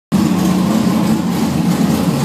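Engine of a 1200 hp tuned Volvo idling steadily and loudly.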